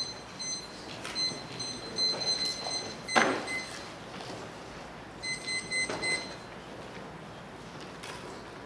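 Chair and table handling as two people sit down at a table with laptops and papers: scattered knocks and shuffles, the loudest a single thump about three seconds in. A thin high electronic whine comes and goes behind them.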